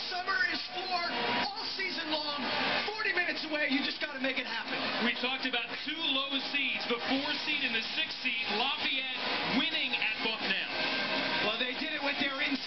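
Men's voices from a TV sports broadcast, with music and arena crowd noise beneath them, played back through a television's speaker.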